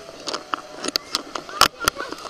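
Pool water splashing close by at the surface: a run of short splashes, the two loudest near the end, with people's voices in the pool around them.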